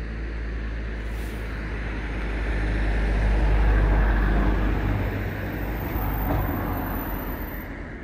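A vehicle passing by: a broad rumble and road noise that grows louder to a peak about four seconds in, then fades away.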